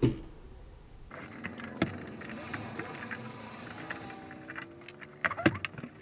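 The top cover of a Sharp VCR being worked loose and lifted off the chassis: scraping and rattling, with several sharp clicks a little after five seconds in.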